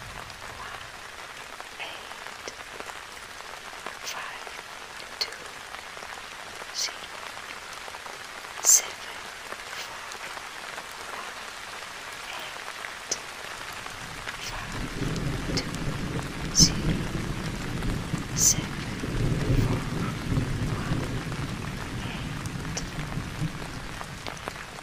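Steady rain with scattered drops ticking sharply on a surface. About two-thirds of the way in a long low roll of thunder builds and rumbles for several seconds before fading near the end.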